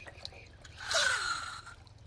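Water swishing and sloshing in a metal basin as a toy truck is pushed through it, one brief swell about a second in.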